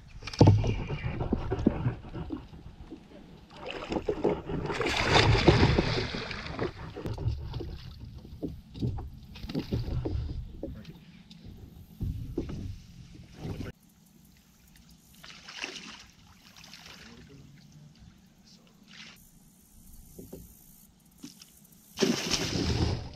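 Water splashing and sloshing around a kayak, with bumps and knocks, as a big alligator gar is fought and landed. The loudest splashing is about four to seven seconds in, and it is much quieter after about fourteen seconds, with only a few scattered splashes.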